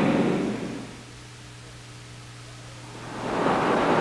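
A rushing noise fades out within the first second, leaving only a faint low hum of the old soundtrack. A rushing rumble swells back in from about three seconds in.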